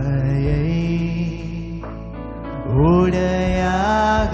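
Two male voices singing a slow Tamil Christian worship song in long held notes over a sustained keyboard pad. About three seconds in the melody rises into a louder held note.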